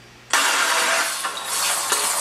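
Stir-fry vegetables sizzling and clattering in a wok on a gas stove, a loud hiss with scattered knocks of the spatula that cuts in suddenly a moment after the start.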